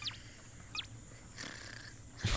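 A small cartoon mouse squeaking twice: two short, high squeaks falling in pitch, about three quarters of a second apart.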